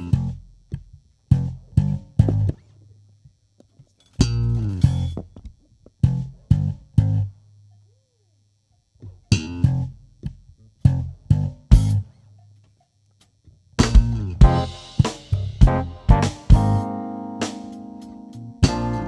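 Electric bass guitar playing a stop-start solo intro: short phrases of plucked low notes broken by pauses of near silence. In the last few seconds the sound fills out with more instruments playing together.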